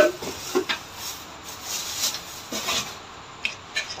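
Handling noise from unpacking: a plastic chopper lid and its packing scraping and rustling against a cardboard box as they are lifted out, with a few light knocks.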